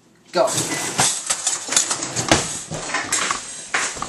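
A shouted "Go", then a rapid jumble of clatters, knocks and rustling as kitchen utensils, jars and bread packaging are grabbed and handled in a hurry.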